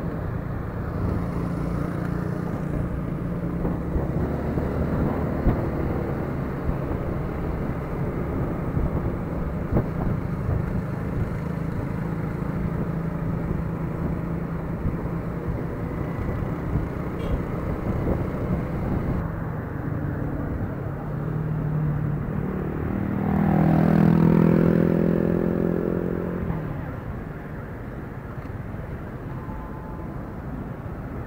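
Motor scooter running at road speed, its engine hum mixed with wind noise on the handlebar-mounted microphone. About three-quarters of the way through, a louder engine swells and fades, and the sound drops somewhat near the end as the scooter slows.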